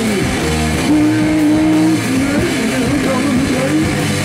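A heavy rock band playing live: loud distorted electric guitars and bass in an instrumental stretch without vocals, one guitar holding a long note about a second in among bending lines.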